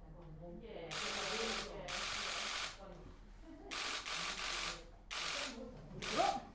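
Press photographers' cameras firing in rapid bursts of shutter clicks: four bursts, each just under a second long, over a quiet murmur of voices.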